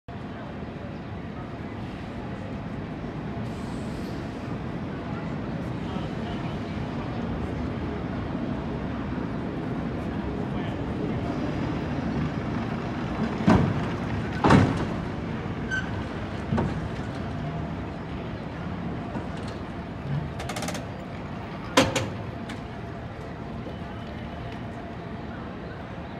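A Powell–Hyde cable car rolling in on its rails with a steady rumble that builds as it nears. Several sharp knocks come from the car as it rolls onto the turntable: two loud ones about halfway through, lighter ones after, and another loud one near the end.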